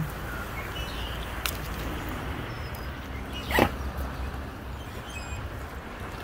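A single brief, high animal squeak or yip about three and a half seconds in, over a steady low background.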